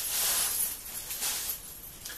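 Rustling of a necklace's packaging as the necklace is pulled off its glued card, with faint clinks of the metal chain. The rustling is loudest in the first half-second or so and then dies down.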